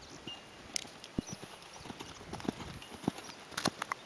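Hoofbeats of a Thoroughbred horse cantering on a sand arena: an uneven run of soft knocks.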